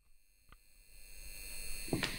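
Faint, steady high-pitched electronic whine made of several thin tones, with a single short click about half a second in and a low hiss growing louder in the second half.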